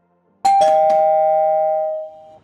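Subscribe-button animation sound effect: a click about half a second in, followed at once by a two-note chime, a higher note then a lower one, ringing on and slowly fading.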